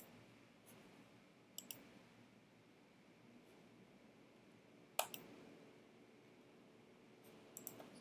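Near silence with a few faint computer mouse clicks: a pair early, the sharpest about five seconds in, and a short cluster near the end.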